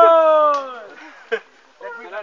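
One loud, drawn-out vocal call from a person, sliding down in pitch and fading over about a second. A short sharp knock comes after it, then people talking near the end.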